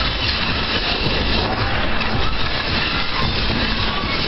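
Continuous rumbling and rattling of a room and its tableware shaking in an earthquake.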